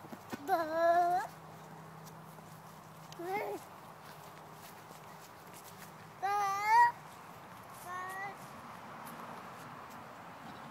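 A toddler's wordless, high-pitched vocalizations: four short babbling calls, the loudest about six and a half seconds in.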